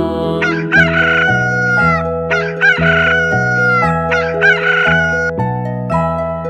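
Rooster crowing three times, each crow a rising call held and then dropping away, over a soft musical backing of sustained notes.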